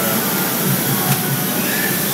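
Steady mechanical running of handheld power tools shaping wooden skateboard decks in a workshop, with one sharp knock about a second in.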